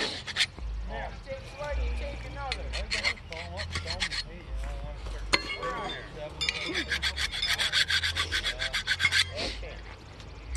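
A rapid, rasping rubbing or scraping sound lasts about three seconds in the second half, with faint distant voices earlier.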